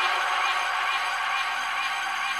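UK garage dance track playing in a DJ mix, a crisp hi-hat-like tick about twice a second over a thin, bass-light mix.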